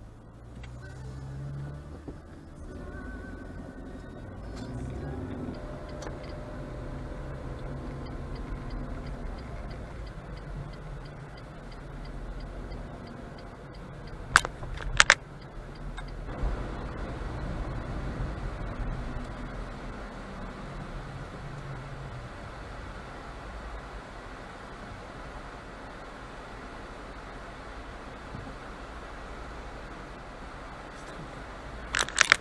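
Car cabin sound picked up by a dashcam's microphone: the engine running and road noise while driving slowly, with two sharp clicks less than a second apart near the middle.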